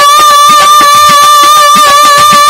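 Live Baul folk music: a singer holds one long, steady high note over a quick, even hand-drum beat.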